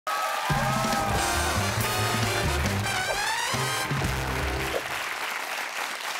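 A short show theme tune with a bass line and gliding melody notes, ending about five seconds in, with applause under it and continuing after it.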